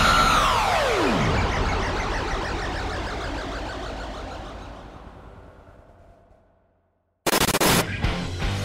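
Produced transition sound effect: a loud swell whose pitch sweeps up and then falls away in the first second, trailing into a dense wash that fades out over about six seconds. A new loud, sudden burst of sound starts about seven seconds in.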